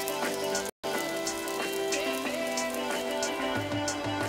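Omelette frying in oil in a nonstick pan: steady sizzling with many small crackles, under soft background music. The sound cuts out for a moment just under a second in.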